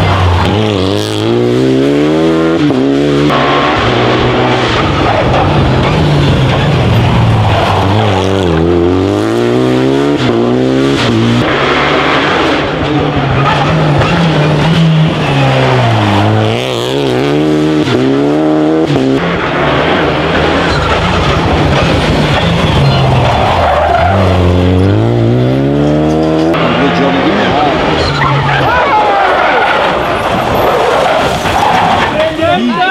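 Renault Clio rally cars passing in turn through a tight bend. Each engine drops in pitch as it slows for the corner, then revs up hard through the gears as it accelerates away. This happens about four times.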